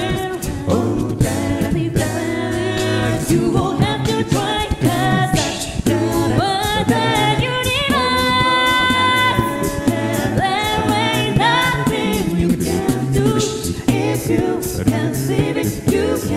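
Six-voice a cappella group singing an English-language pop song: a lead voice over close vocal harmonies, a sung bass line and beatboxed percussion keeping a steady beat. About eight seconds in, one voice holds a long steady note for over a second.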